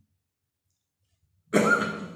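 A man coughs once, loudly, about a second and a half in, after a stretch of near silence.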